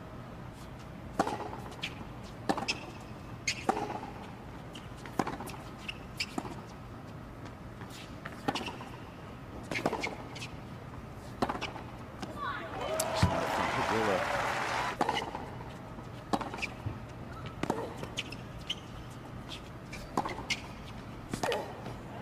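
Tennis rally on a hard court: sharp pops of racket strings hitting the ball and the ball bouncing, about one every second or so. About two-thirds of the way through, a burst of crowd voices rises for a couple of seconds.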